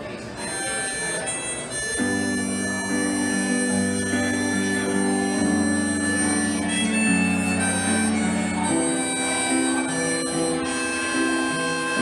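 Instrumental break of a slow ballad: harmonica playing the melody over sustained electric keyboard chords, with low bass notes coming in about two seconds in.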